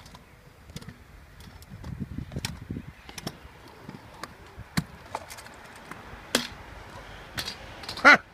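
Kick scooter rolling over skatepark concrete: a low rolling rumble with a run of sharp clicks and knocks, the loudest about six seconds in.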